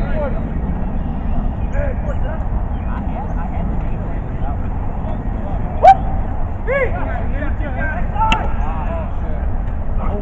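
Distant players shouting in short bursts during a flag football play over a steady low rumble, with one sharp loud knock just before six seconds in.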